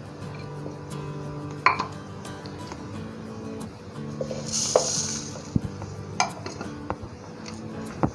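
Light knocks and clinks as cut peach pieces go from a plate into a plastic shaker cup, then sugar tipped from a plate into the cup with a brief hiss about halfway through. Soft background music plays underneath.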